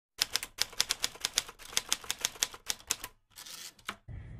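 A fast, uneven run of sharp clicks like keys being struck, about eight a second, stopping about three seconds in. A short soft hiss and one last click follow near the end.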